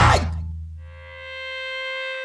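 Pop-punk song at a break: the full band stops at once, a low bass note rings on and fades, and a single held tone with many overtones swells in about halfway through.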